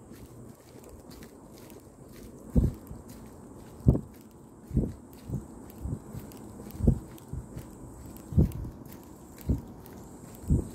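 A series of dull, low thuds at an uneven pace of roughly one a second, starting a couple of seconds in.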